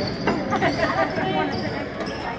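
A basketball being dribbled on a hardwood gym floor, bouncing several times, over background voices in the gym.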